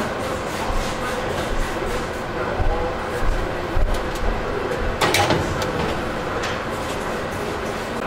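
Metal roasting pan set into an oven and the oven rack slid in along its runners, with a sharp metal clatter about five seconds in over steady background noise.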